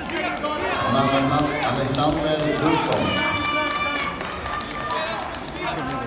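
Voices shouting coaching calls to a grappler across a sports hall, with a shrill, high-pitched call about three seconds in.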